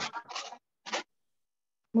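A few short scratchy rustles, a quick cluster at the start and one more about a second in.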